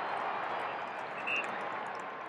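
Large stadium crowd cheering a goal, a dense wash of voices that slowly fades.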